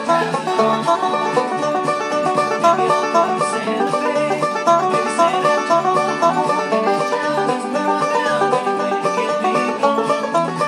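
Banjo picked in bluegrass style: a fast, steady stream of quick plucked notes with no pauses.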